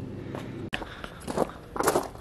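Footsteps crunching on gravel, with a click about two-thirds of a second in and a short vocal sound near the end.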